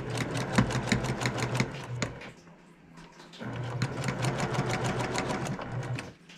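Electric sewing machine stitching quilt patches in two fast runs of even, rapid stitches with a pause of about a second between them.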